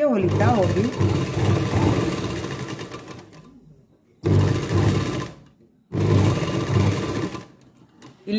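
A domestic straight-stitch sewing machine runs in three stretches as fabric is stitched: a long run that slows and fades out, then two short runs with brief stops between.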